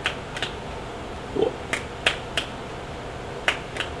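Fists smacking into open palms while counting off rock paper scissors: about seven sharp slaps in quick groups of two, three and two.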